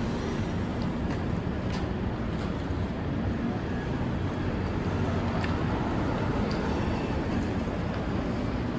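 Steady city street traffic noise: a low rumble of vehicles on the roadway, with a couple of faint clicks.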